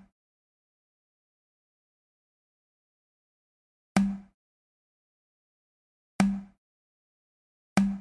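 Online bingo game's ball-draw sound effect: a short low tone with a sharp attack, dying away within about a third of a second. It plays each time a ball is drawn, three times: about 4 seconds in, about 6 seconds in, and near the end.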